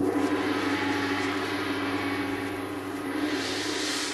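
A gong struck once, ringing on with a shimmering wash that swells again near the end.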